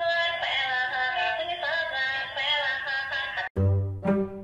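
Dancing cactus toy playing a sung song through its small speaker, thin and without bass. It cuts off about three and a half seconds in, and music with a deep bass and plucked strings takes over.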